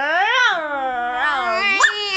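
Children imitating a dog, a drawn-out whining howl that slides up and down in pitch, with two voices overlapping.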